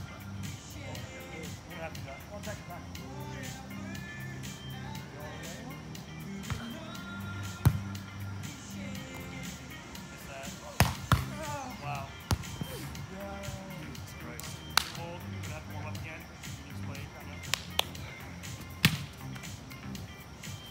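Volleyball being struck by players' hands and forearms during a beach volleyball rally: a string of sharp slaps, the loudest about a third of the way in and several more through the middle and near the end. Background music with a steady bass beat plays underneath, with some voices.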